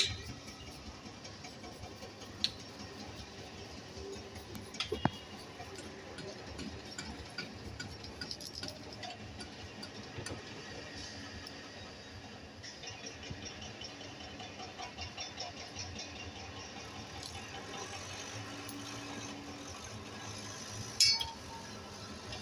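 Ginger being grated on a small handheld grater over a steel plate: a faint, repeated scraping, with a few light clinks of the grater against the plate.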